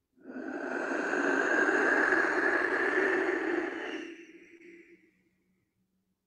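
Clay wind whistle blown with one long breath: a breathy rushing like wind, lasting about five seconds and trailing off at the end.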